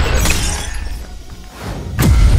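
Cartoon sound effects over background music: a noisy crash-like effect with a low rumble that fades away over the first second and a half, then swells again into a sharp hit at the very end, as the character passes through a glowing portal.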